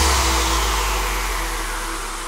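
Electronic dance music at a breakdown. The kick drum has dropped out, leaving a held low bass note under a white-noise sweep that falls in pitch and slowly fades.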